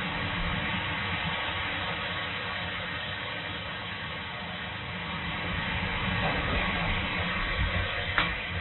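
Steady, even hiss of white noise, heard through a baby monitor camera's low-fidelity microphone.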